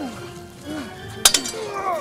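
Sword and polearm clashing: one sharp metal-on-metal strike about a second in, ringing briefly, with fighters' shouts and background music.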